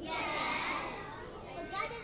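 A group of children calling out answers at once, faint and off-microphone, a jumble of overlapping young voices.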